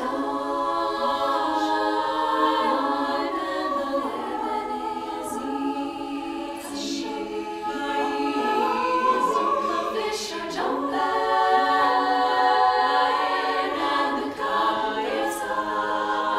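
Women's a cappella group singing in close harmony, several voices holding and moving through sustained chords with no instruments.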